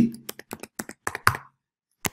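Typing on a computer keyboard: a quick run of key clicks that stops about one and a half seconds in and starts again just at the end.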